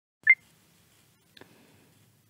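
A short electronic beep near the start, two quick tones stepping up slightly in pitch, followed about a second later by a faint click.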